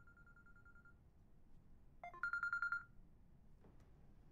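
Mobile phone ringing with an electronic trill: a faint trill for the first second, then a short rising blip and a louder trill about two seconds in that lasts about half a second.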